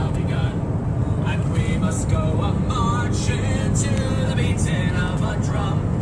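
Steady road and engine noise inside a moving car, with music carrying a wavering melody over it.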